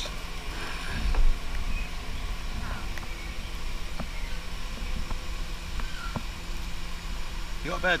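Aviary background: a few faint, brief bird chirps and soft clicks over a steady low rumble, with a louder low rumble about a second in.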